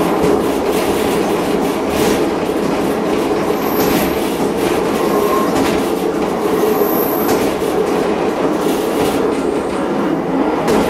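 Train running steadily on a single-track branch line, its wheels clicking over rail joints, with two brief high-pitched wheel squeals on the curves, about four and seven seconds in.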